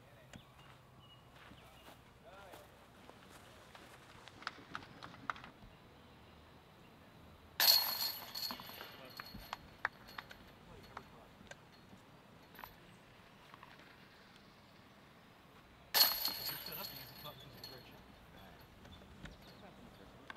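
A disc golf putt hitting the chains of a metal basket twice, about eight seconds apart: each time a sudden metallic crash and jingle of chains that rings down over a second or two.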